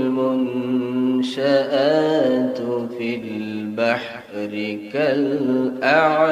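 A man reciting the Quran in the melodic qirat style into a microphone. He holds long notes with ornamented, wavering pitch, with a few short breaks between phrases.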